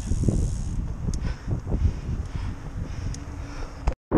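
Wind buffeting an action camera's microphone while a bicycle is ridden along a road, giving an uneven low rumble with a few faint ticks. It breaks off abruptly just before the end.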